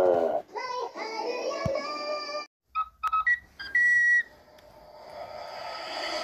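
A string of edited-in music and sound-effect clips: a quick rising sweep, a held chord for about two seconds, then a few short beeps and a brief steady whistle-like tone, and finally a hiss that swells up near the end.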